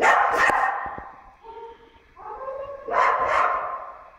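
A young puppy barking: two sharp barks right at the start and two more about three seconds in.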